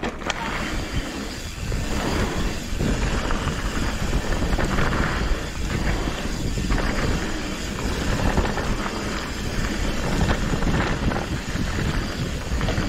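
A mountain bike riding a dirt singletrack, with wind rushing on the microphone over the ride noise: a steady rough noise, heaviest in the low end, that swells and eases every second or two.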